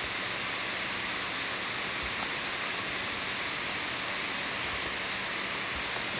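Steady hiss of a voice-over microphone's background noise with a faint low hum, and a few faint short clicks scattered through.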